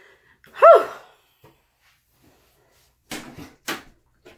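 A short, loud vocal cry whose pitch rises and falls, about half a second in. Near the end, a few sharp clicks and knocks from the bathroom door's knob latch and door as a malamute pushes it open.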